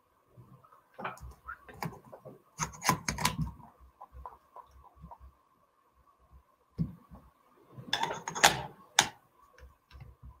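Clicks and knocks of camera adapter rings being handled and screwed onto a macro bellows. They come in two clusters, the second near the end and the loudest.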